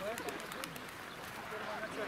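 Pigeons cooing over indistinct voices of people talking, with a few sharp clicks in the first second.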